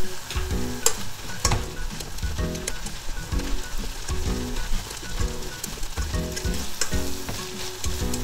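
Broccoli and garlic stir-frying over high heat in a stainless steel saucepan, sizzling as the liquid drawn out by the soy sauce cooks off. Chopsticks stir the pan and knock against it a few times, sharpest in the first two seconds.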